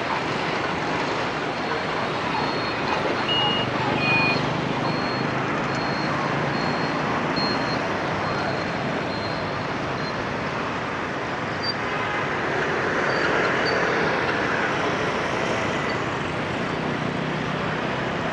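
Steady city street traffic: a constant wash of motorbike and car engines and tyres passing, swelling slightly about two-thirds of the way through. A faint high beep repeats through the first half.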